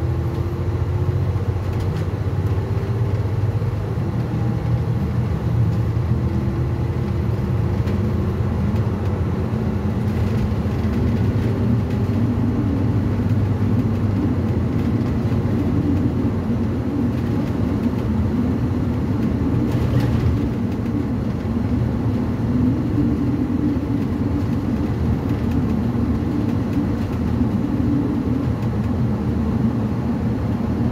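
Transit bus heard from inside the cabin at freeway speed: a steady low engine drone and road rumble. A faint whine rises gently in pitch over the first several seconds before the sound settles.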